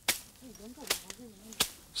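Weeds being slashed down by hand: three sharp strokes about three-quarters of a second apart.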